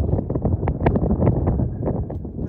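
Wind buffeting the phone's microphone: a loud, rough, uneven rumble with scattered crackles.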